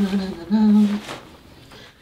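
A person humming a tune: two held notes in the first second, then the humming fades away.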